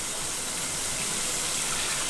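Water running steadily from a tap into a bathtub.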